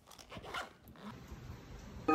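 Zip of a clear plastic pencil case being pulled by hand: a short, faint rasp about half a second in, with light rustling of the plastic pouch.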